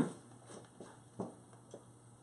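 Faint mouth sounds of a man biting into and chewing a slice of sponge cake, with a short "mm" about a second in.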